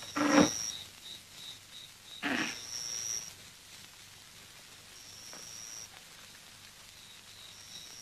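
High-pitched chirping of night insects, a pulsed call and a steadier trill that come and go, with two short rustling noises, one just after the start and one a little over two seconds in.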